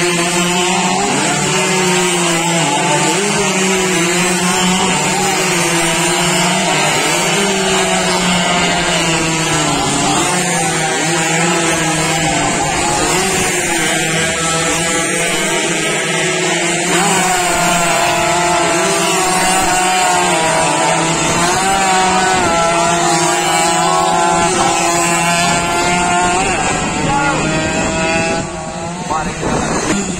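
Two-stroke Yamaha F1ZR racing motorcycles running hard, several engines at once, their pitch rising and falling as they accelerate and change gear. The sound drops briefly near the end.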